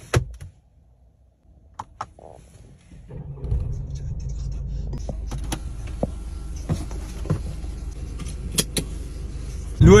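A few sharp clicks from the Mercedes-Benz C 220's cabin controls, then, about three seconds in, a steady low rumble of the car running, heard from inside the cabin.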